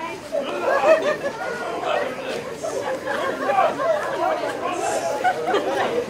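Several voices talking over one another: indistinct chatter with no single clear speaker.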